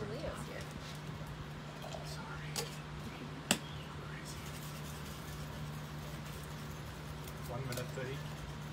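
A single sharp metallic clack of cocktail shaker tins about three and a half seconds in, with a smaller knock a second before it, over a steady low hum and faint background voices.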